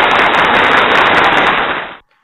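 A loud, steady crackling noise that fades out just before the end.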